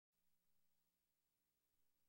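Near silence: only a very faint steady low hum and hiss.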